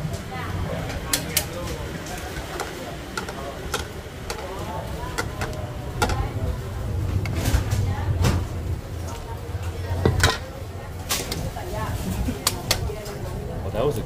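Clinks and taps of long chopsticks and a wire-mesh strainer against metal pots and plastic bowls at a noodle stall, a dozen or so sharp strikes scattered through. Under them run a low steady rumble and background voices.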